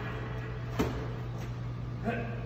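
One sharp thud a little under a second in, a medicine ball striking during a throwing drill, over a steady low hum.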